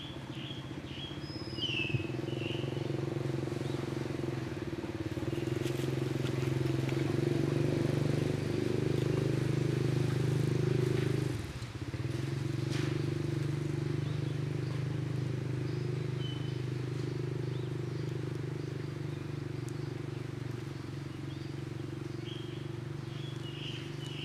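A motor engine running steadily, growing louder over the first ten seconds or so, then dropping sharply in pitch and level for a moment about eleven and a half seconds in before running on and slowly fading.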